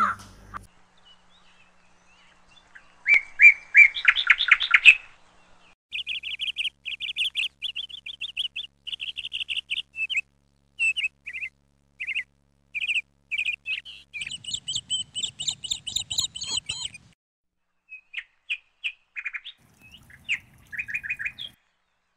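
Bird calling: runs of rapid, high chirping notes, broken by short pauses.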